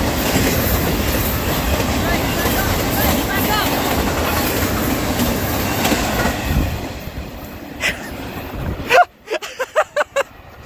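Intermodal freight train's container well cars rolling past close by, with steady wheel-on-rail noise and clickety-clack. The noise eases after about seven seconds as the end of the train goes by. A sharp knock comes about nine seconds in.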